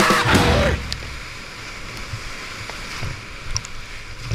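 Loud rock music cuts off under a second in, leaving the steady rush of whitewater rapids churning around a kayak, with a few low knocks.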